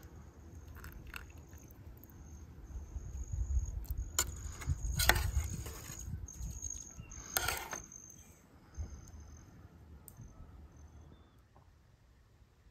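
Crickets trilling in a steady high tone that stops and starts, while a metal spork clinks and scrapes against a metal camping pot a few times in the middle, the loudest sounds, over a low rumble.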